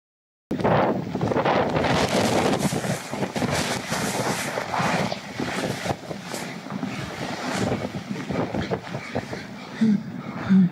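Avalanche air blast and driving snow buffeting an iPhone's microphone as heavy wind noise. It cuts in about half a second in, loud at first, and eases somewhat in the second half.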